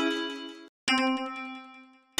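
Synthesized melody notes from a stock FL Studio plug-in sounding as a trap melody is drawn into the piano roll: a held note fades out and stops just before a second in, then another note starts and fades away.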